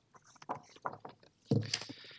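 A few short soft clicks and taps at a podium microphone, then a brief voiced sound from the man speaking at it about one and a half seconds in.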